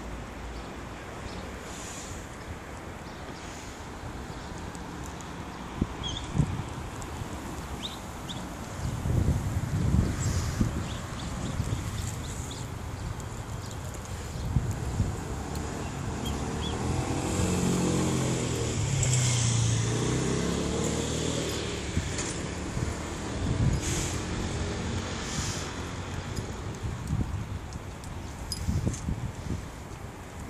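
Road traffic: a motor vehicle passing, its low engine note loudest about two-thirds of the way through and falling in pitch as it goes by. There are a few low thumps about ten seconds in.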